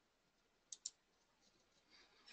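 Near silence, broken about three-quarters of a second in by two quick sharp clicks about a tenth of a second apart, a computer mouse double-click.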